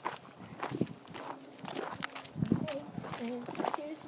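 Footsteps crunching on a gravel and dirt path, irregular steps throughout, with a voice heard faintly in the second half.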